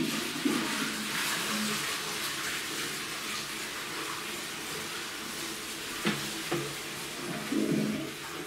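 Toilet flushing: a sudden rush of water that eases into the steady hiss of the cistern refilling. A couple of sharp knocks come a little after six seconds in, and a brief clatter near the end.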